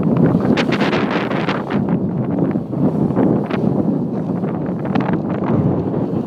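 Wind buffeting the microphone during a snowboard run, over a steady rough rush, with many short rasps of the board's edge scraping across snow.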